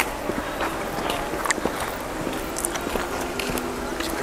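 Footsteps on a dirt and leaf-litter forest path, irregular soft steps over steady outdoor background noise.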